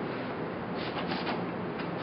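Hand-held pump sprayer being pumped and primed to start spraying acrylic concrete sealer, with a few short strokes close together about a second in over a steady hiss.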